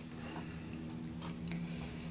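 Faint small clicks and handling noises of a wooden snap mousetrap's wire bail and spring being set by hand, over a steady low hum.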